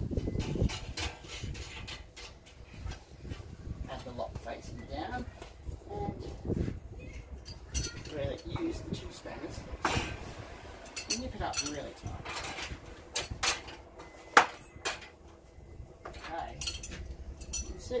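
Metal clinks, taps and knocks as cam lock parts are fitted to a galvanised steel meter box door and the door is handled and laid down on a workbench. The sharpest knock comes about fourteen seconds in.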